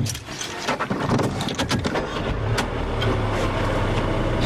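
Key clicking into the ignition of an Infiniti Q30, then its Mercedes-sourced 2-litre turbocharged four-cylinder starting about a second in and settling into a steady idle, heard from inside the cabin.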